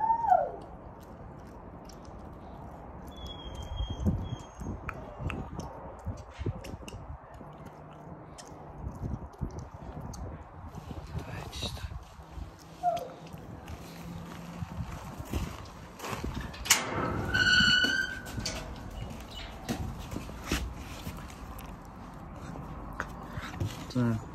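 A puppy chewing a small scrap it has picked up, with faint, irregular clicks and knocks of its jaws. A brief high-pitched cry comes about two-thirds of the way through.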